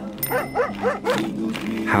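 A quick run of about six short, yelping animal calls over background music, in the first half.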